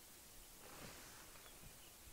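Near silence: a faint, steady background hiss with no clear event.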